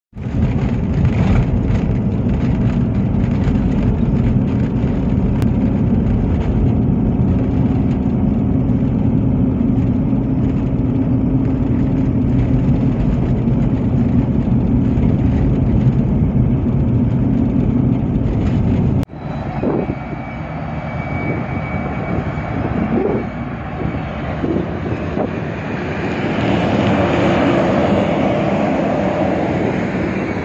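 Car driving on an unsealed red dirt road, heard from inside the cabin as a steady low rumble of tyres and engine. About two-thirds of the way through it cuts to a long freight train of open wagons rolling past, its wheel noise swelling near the end.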